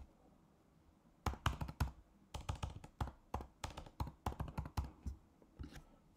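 Computer keyboard keys being typed: a quick, irregular run of keystroke clicks starting about a second in, as a word is entered into a text field.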